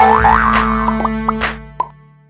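Short cartoon jingle for an animated logo, with springy rising and falling boing effects near the start and a quick pop near the end. The music fades out at the close.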